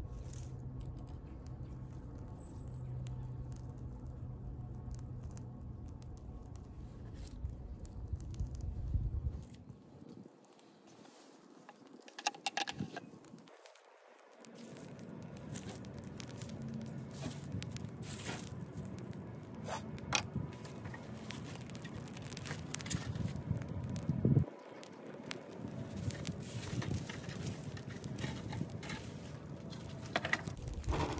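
Dry leaves rustling and crackling as they are handled and begin to burn, with irregular small clicks and crackles, thickest in the second half. A steady low rumble underlies the first nine seconds or so.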